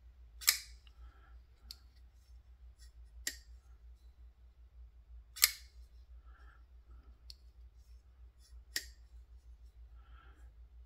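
Mocenary MK-10 titanium folding knife being opened and closed by hand: four sharp metallic clicks about three seconds apart, the loudest about half a second and five and a half seconds in, as the blade snaps open and the detent ball catches it shut, with faint ticks from handling between.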